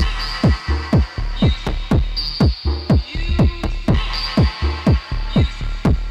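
Live hardware techno in a jacking, old-school style: an Arturia DrumBrute kick drum keeps a steady four-on-the-floor pulse of about two beats a second, each kick dropping quickly in pitch, over a deep MicroBrute bassline and sustained synth parts from a Novation Circuit. The whole mix is recorded straight to cassette tape.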